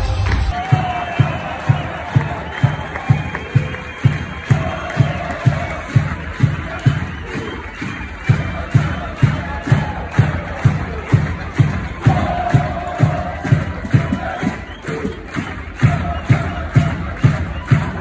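Supporters' drum beaten in a steady fast rhythm, about two to three beats a second, under a crowd chanting and cheering in a sports arena.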